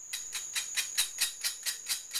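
Sandpaper block rubbed quickly back and forth over the cut end of a metal golf shaft, about four to five scratchy strokes a second, taking the sharp edges off the fresh cut.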